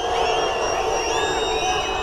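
A large street crowd of yellow-vest protesters, a steady din of many voices shouting and calling out together.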